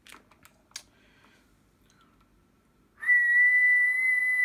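A person whistling one steady, high note into a Cobra 29 NW Classic CB radio's hand microphone while transmitting, to check the AM modulation level. The whistle starts about three seconds in, after a few faint clicks.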